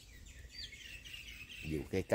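Birds chirping quietly in the background: a few quick, high notes, one of them rising, during a lull in speech.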